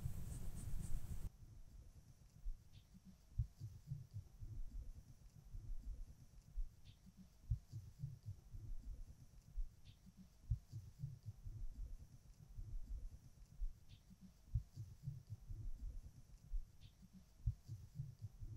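Faint, irregular low thumps with a few soft ticks: quiet handling noise while makeup is brushed on.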